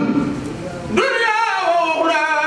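A man singing unaccompanied into a microphone, in long, wavering held notes. The first second is a breathy, unpitched break; the sung voice comes back about a second in.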